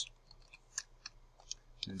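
Computer keyboard typing: a few light, irregularly spaced keystrokes.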